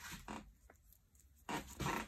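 Close handling noise from a rubber-jacketed cable being twisted and rubbed in the hands: a few short rustling scrapes, the loudest near the end.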